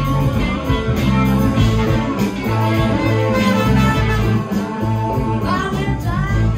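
Live blues band playing, with electric guitars over drums. A few bent notes rise near the end.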